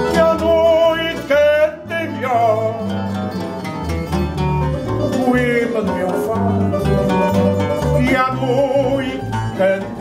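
Fado accompaniment: a Portuguese guitar picking the melody over a strummed viola de fado (classical guitar) and a walking electric bass line.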